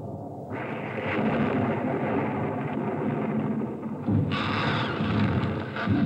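Storm sound effects from a film soundtrack heard over a TV's speakers in a room: wind and rumbling thunder building up, with a louder crash about four seconds in and another sharp hit near the end.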